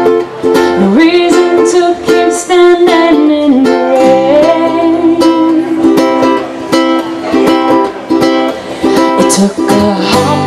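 Acoustic guitar and ukulele strummed together in a steady reggae rhythm, an instrumental intro before the singing.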